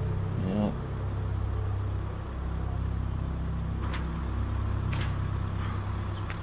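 Film soundtrack: the steady low rumble of a military vehicle's engine running, with a few faint clicks about four and five seconds in.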